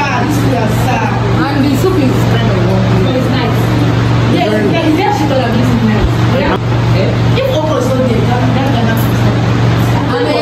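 Indistinct voices talking in the background over a steady low hum.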